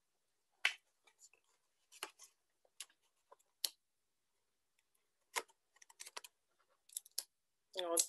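Paper and sticky tape being handled while a paper strap is taped down: short, scattered crackles and clicks, in small clusters around five to seven seconds in.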